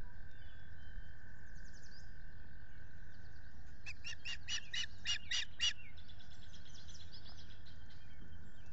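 An osprey calling at the nest: a quick run of about eight high calls, around four a second, about halfway through, with fainter bird chirps in the background.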